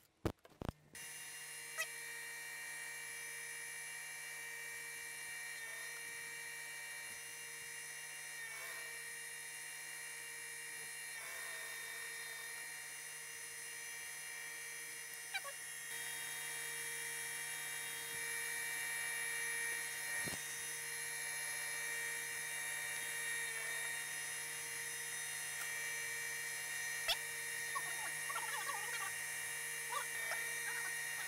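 Steady electric hum of an industrial sewing machine's motor running at constant speed, starting suddenly about a second in, with a few faint clicks along the way.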